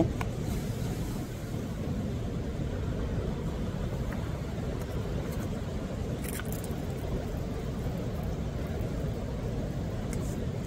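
Steady low rumble of ocean surf breaking on a rocky shore, with a couple of faint clicks a little past halfway.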